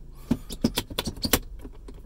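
Aftermarket Black Forest Industries shift knob on an Audi B8.5 allroad's gear selector lever, clicking and rattling as it is rocked by hand: a quick, irregular run of light clicks, loudest a little past the middle. The clicks are the sign of slop in the knob's fitting, which the owner finds feels cheap and which BFI calls normal.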